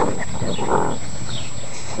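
Six-week-old Newfoundland puppies playing, with two short puppy vocal sounds, one at the very start and one just under a second in.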